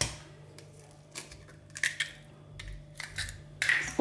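An egg being cracked into a stainless steel mixing bowl: a handful of light, sharp taps and clicks, roughly one every half second to second, over a faint steady hum.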